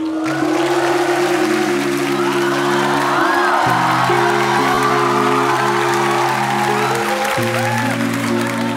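A cappella vocal group singing long held chords that change about halfway through and again near the end, over audience applause and cheering.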